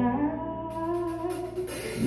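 Soul band in a quiet instrumental break: slow, held notes from bowed cello, electric bass and piano with no drumbeat. A high hiss swells near the end.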